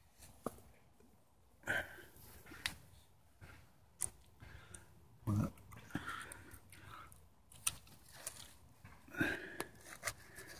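Faint, irregular rustling and brushing of large pumpkin leaves and vines as someone pushes through the patch, with scattered soft crackles and clicks.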